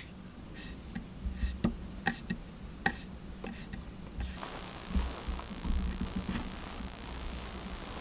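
Light clicks and taps on a laptop trackpad, a dozen or so short sharp clicks over the first four seconds. After about four seconds a steady hiss rises underneath, with a few softer clicks.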